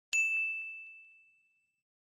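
Notification-bell chime sound effect: a single bright ding, struck once and fading over about a second. It marks the subscribe animation's bell icon being switched on.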